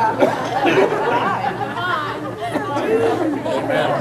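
Congregation reacting with many overlapping voices talking at once, a steady murmur of chatter with no single clear voice.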